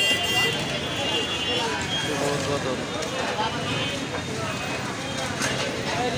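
Busy street din: many voices talking at once over traffic noise from rickshaws and motor vehicles.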